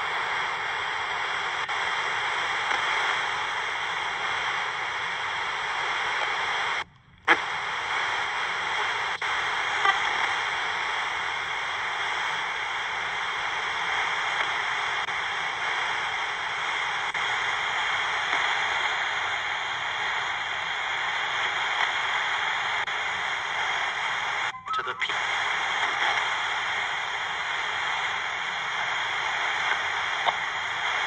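Portable Sony AM radio hissing with steady static, used as a spirit box. The hiss cuts out for a split second about seven seconds in and comes back with a click, then dips briefly again near twenty-five seconds.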